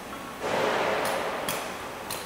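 Workshop background sounds: sharp metallic knocks about every half second, and a burst of hissing noise about half a second in that lasts roughly a second.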